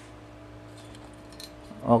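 Faint metallic clinks and rattles from a metal scissor-arm microphone boom stand being picked up and handled, over a steady low hum.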